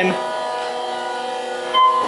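Otis hydraulic elevator running: a steady hum of several fixed tones that does not change in pitch, with a short high tone near the end.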